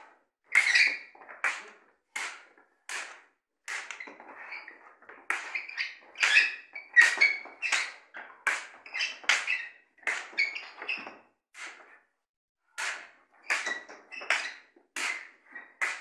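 Two long sparring sticks clacking against each other as they strike and block: an irregular run of sharp clacks, one or two a second, sometimes in quick pairs.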